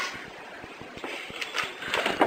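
Camera handling noise: a scatter of soft knocks and rustles as the camera is moved about.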